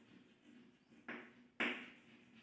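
Chalk writing on a blackboard: two short strokes, about a second in and near the end, each starting sharply and fading away.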